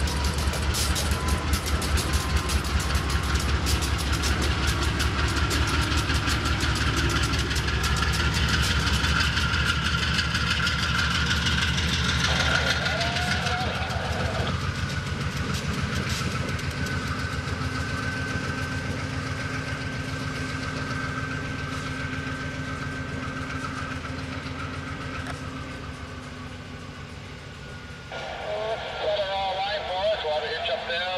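GE Dash 8 diesel locomotives passing at close range, the diesel engine's low, even throbbing loud for the first twelve seconds or so and then fading steadily as they move away.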